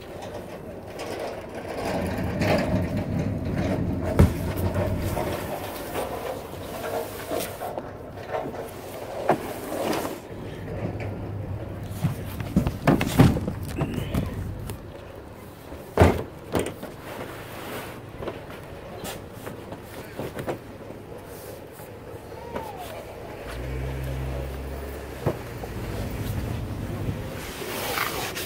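Large cardboard boxes being shoved and slid into a pickup truck's ribbed bed: cardboard scraping on the bed with scattered sharp knocks and thuds as the boxes bump in.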